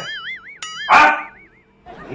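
Edited-in comedy sound effect: a wobbling, warbling electronic tone, cut by a sharp click about half a second in and a short, loud, bark-like yelp about a second in. The wobble fades out before the end.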